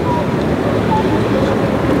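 Outdoor street ambience: a steady, loud low rumble of traffic, with a faint background of voices.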